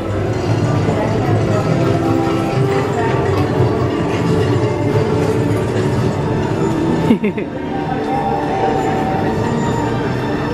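Background music under the chatter of a crowd, at a steady level. About seven seconds in there is a single sharp sound with a short falling glide.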